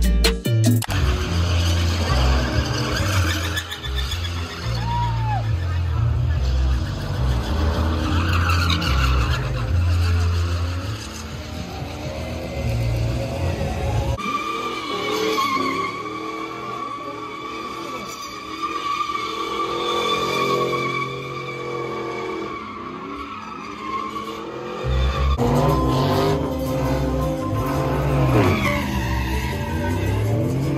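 Loud truck engines running, mixed with music and voices. The sound changes abruptly about 14 seconds in and again about 25 seconds in. The middle stretch carries a steady high whine.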